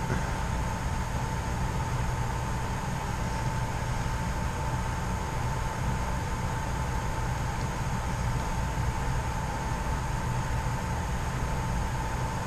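Steady mechanical hum and hiss with a thin, high, unchanging tone running through it, like a fan or motor running; it stays level throughout.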